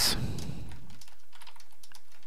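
Computer keyboard keys being typed in a quick, irregular run of clicks.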